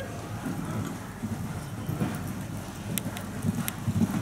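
A show-jumping horse cantering on the sand footing of an indoor arena, its hoofbeats coming as soft, repeated low thuds.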